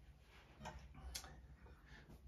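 Near silence with two faint clicks about half a second apart as an acoustic guitar is lifted and handled.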